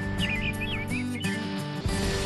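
Weather forecast intro jingle: sustained synthesized chords, with a brief flurry of short high chirps about a quarter of a second in.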